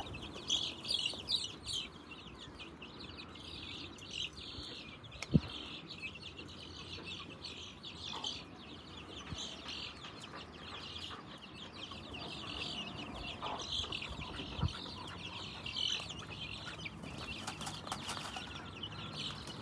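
A group of chicks peeping without pause, many short high cheeps overlapping. There are two dull thumps, about five seconds in and near fifteen seconds.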